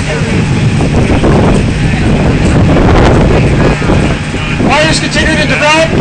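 Loud steady rumbling noise with a constant low hum beneath it, and a man's voice starting near the end.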